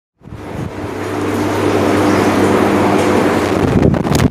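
A loud, steady mechanical hum with a hiss, rising quickly in the first moment and then holding level.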